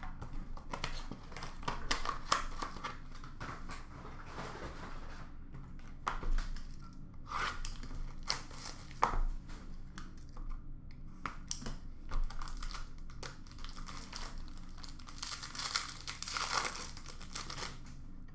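Hockey card pack wrappers being torn open and crinkled by hand, in irregular crackly bursts with small clicks and handling noises between them.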